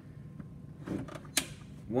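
Plastic Ninja blender pitcher being handled on its motor base: soft handling noises, then a single sharp plastic click about one and a half seconds in.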